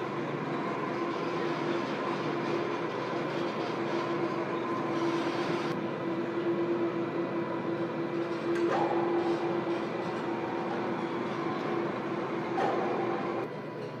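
Electric overhead crane running while it moves a suspended load: a steady mechanical hum with a constant whine, which drops away shortly before the end.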